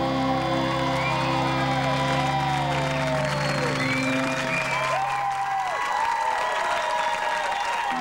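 Studio audience applauding and cheering as the band's last electric guitar and bass chord rings out; the held low notes stop about six seconds in, leaving the applause.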